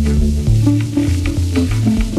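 Acid techno played live on Roland TB-303 bass synthesizers and a TR-606 drum machine: a stepping, sequenced bassline over a regular kick and evenly spaced hi-hat ticks.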